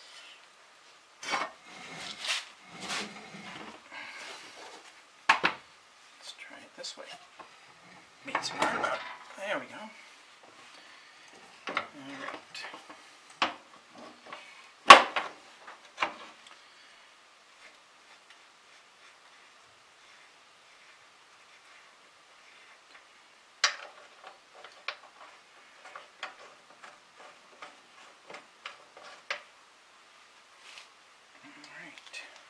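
Metal clinking and knocking as a V-belt and a grooved drive pulley are handled and fitted onto the sickle mower drive shaft of a Farmall Cub. There is a run of clanks in the first half, the loudest about halfway. After a pause there is a sharp knock, then lighter ticks near the end.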